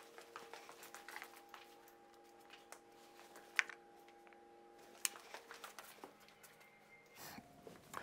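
Very quiet room with a faint steady hum and scattered soft clicks and taps, two of them sharper, a little after the middle.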